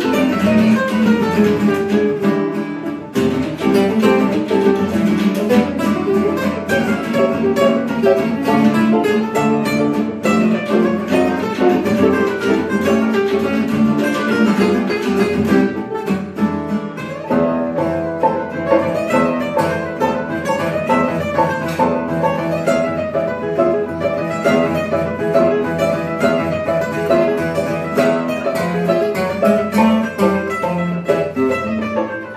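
Live gypsy jazz waltz on violin and two acoustic guitars, bowed violin over plucked and strummed guitars.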